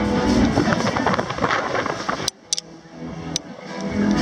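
Wind buffeting the phone microphone with a deep rumble over band music. About two-thirds through, the wind noise cuts out suddenly and the music comes through fainter, then slowly builds again.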